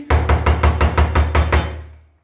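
The electric whisk's mixing attachment is knocked rapidly against the rim of a stainless steel pot, about six knocks a second for a second and a half, to shake off the mashed pumpkin and potato. The knocks fade out near the end.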